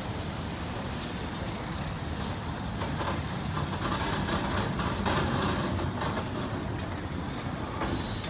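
A Lisbon Remodelado tram approaching and passing close, its wheels rumbling on the street track and growing louder about halfway through. Sharp clicks and knocks from the wheels on the rails come through from about three seconds in.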